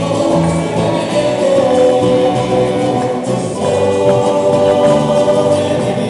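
Folk ensemble playing live: electric bass and stick-struck percussion under a sustained melody, with voices singing together.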